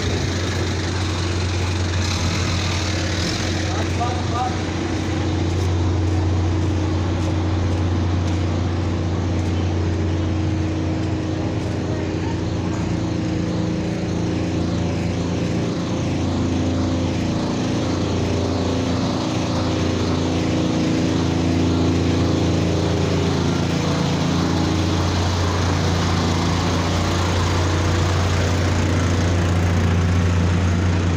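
Vehicle engines running steadily: a constant low hum with a wavering drone above it.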